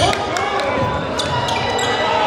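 A basketball being dribbled on a hardwood gym floor during game play.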